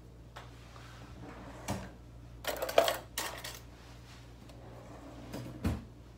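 Small objects being rummaged and handled in a bag: a knock, then a burst of clattering and rustling about halfway through, and another knock near the end, over a steady low hum.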